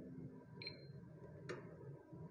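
Megger MIT510/2 insulation resistance tester giving one short, high electronic beep about half a second in, as its TEST button starts a 1000 V insulation test. A single sharp click follows about a second later.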